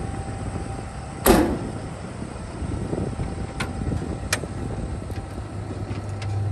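Steady low drone from the idling Ford F-550 bucket truck and its gasoline-powered generator, with one loud sharp bang about a second in and two faint clicks a few seconds later.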